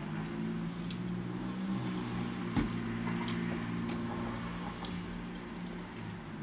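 Eating with a fork from a plastic bowl: faint clicks of the fork against the bowl and one sharper knock about two and a half seconds in, over a low hum that shifts in pitch.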